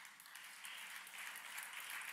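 Congregation applauding, the clapping swelling gradually.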